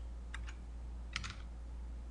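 A few quiet keystrokes on a computer keyboard, typing a short component value, over a steady low hum.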